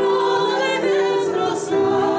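Three women singing a Ukrainian folk song in harmony, holding long notes, with digital piano and acoustic guitar accompaniment.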